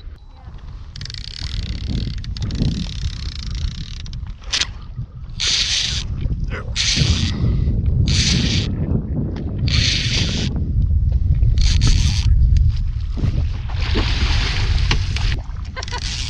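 Baitcasting reel cranked in repeated short spurts of about a second each: the angler reeling down tight to a musky that has taken a live sucker, before setting the hook. A steady low wind rumble on the microphone runs under it.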